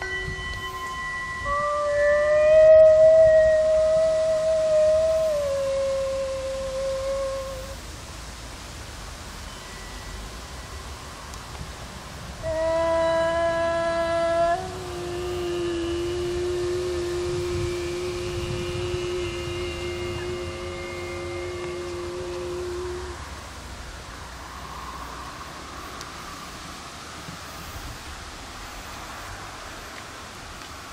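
Long sustained tones held at a steady pitch, voice- or horn-like. The first lasts about six seconds and drops a step near its end. After a pause comes a lower, louder tone of about ten seconds. Only faint outdoor background noise remains in the last several seconds.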